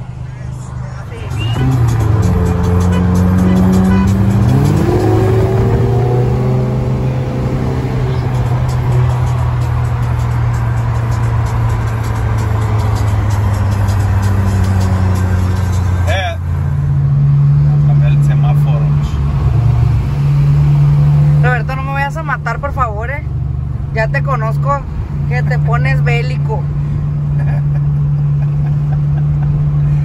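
Volkswagen Golf GTI Mk7's turbocharged four-cylinder heard from inside the cabin, pulling away under acceleration with a rising pitch, then settling into a steady cruising drone. After a sudden cut about halfway, a steadier low engine hum continues under voices.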